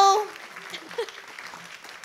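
A woman's long, high held note on a drawn-out syllable cuts off just after the start, followed by soft applause from an audience.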